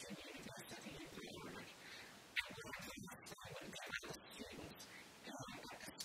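Faint, low speech that the recogniser did not catch, with one sharp click about two and a half seconds in.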